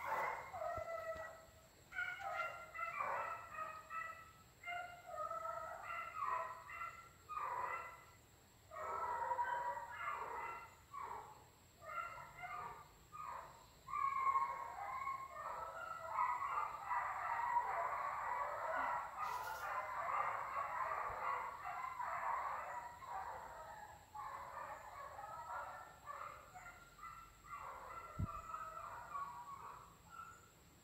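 Hunting dogs barking and yelping over and over in short bursts, thickening into nearly continuous baying in the middle and easing off near the end: the dogs are working game on an agouti hunt.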